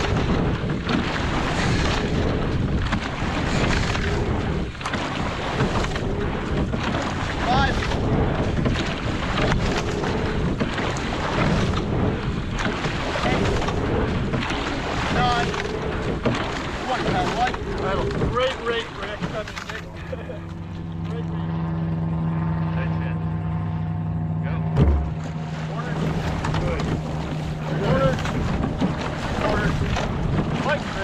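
Wind on the microphone and water rushing past a rowing quad shell, surging with each stroke. About twenty seconds in, a steady low hum joins for about five seconds and ends with a sharp thump.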